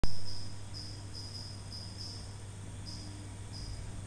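Insect chirping: a high-pitched trill in irregular spells over a steady low hum, opening with a brief loud sound that fades within half a second.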